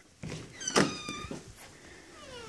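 A cat meows once, a short call falling slightly in pitch, a little after a light knock.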